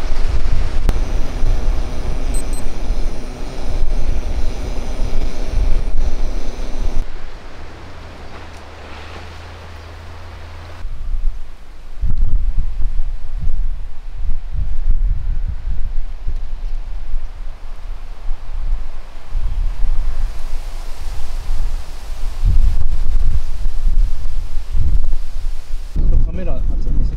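Strong gusty wind buffeting the microphone, a low rumble that comes and goes in gusts. For the first seven seconds a steady hiss from the camping gas burner under the pot sits beneath it, and a quieter spell follows before the gusts return.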